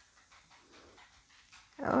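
Quiet room with faint breathing close to the microphone, then a woman's startled "Oh" near the end.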